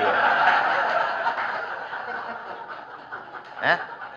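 Audience laughing together, loudest at the start and dying away over about three seconds; a short voice sound comes near the end.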